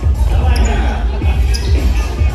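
Dance-battle music played loud over speakers, with a heavy bass beat, under the voices of the watching crowd.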